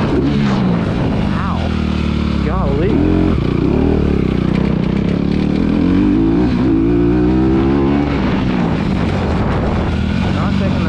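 Motocross dirt bike engine under load, its revs rising and falling as the rider works the throttle and gears: two quick climbs in the first few seconds, then a longer pull that drops off about eight seconds in. Steady wind rush on the bike-mounted microphone.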